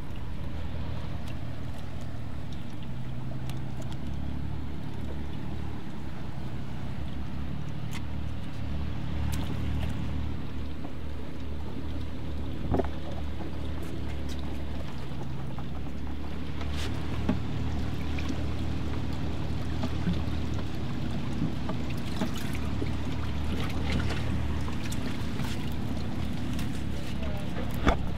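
Boat engine running steadily at low speed, a low hum, with a few short knocks and clicks from tackle being handled on deck.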